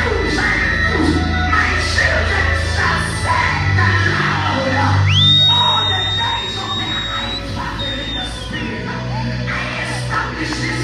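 Live gospel worship music: a man singing into a microphone over a band of held keyboard chords, bass guitar and drums. About five seconds in, a high whistling tone slides up and holds for about three seconds.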